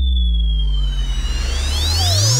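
Dramatic background-score sound effect from a TV serial. A deep sustained drone sits under a thin high tone that slowly falls, and about halfway through a cluster of synthesized glides sweeps upward.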